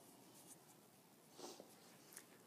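Near silence: faint room tone with a couple of brief soft rustles.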